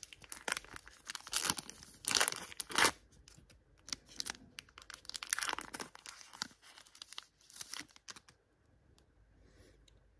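Foil wrapper of a Topps Chrome trading-card pack being torn open and crinkled, in a string of irregular rips and rustles that die away about eight seconds in.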